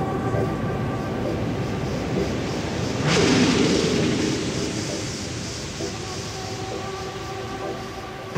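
A noisy, rumbling passage in an electronic dance music DJ mix. A sudden surge of rushing noise comes in about three seconds in and slowly fades, and synth notes return near the end.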